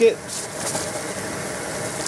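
Backpacking canister stove burner running with a steady hiss while it heats water, with faint crinkling of plastic food bags being handled.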